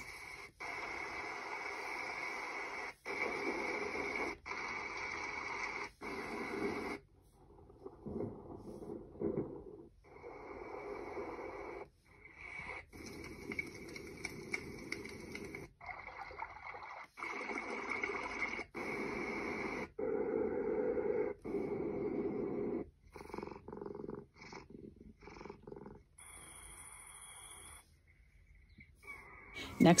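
A string of short recorded nature-sound previews from the Hotmoon Mona Pro sound machine app, each lasting one to three seconds and cut off abruptly as the next is tapped: rain and rushing-water noise, a snoring, purring cat, and a high steady tone near the end.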